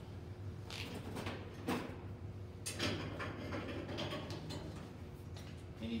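A person moving about: scattered light knocks and rustles, over a steady low hum.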